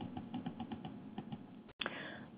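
Faint computer keyboard typing: a quick, irregular run of key clicks, several a second.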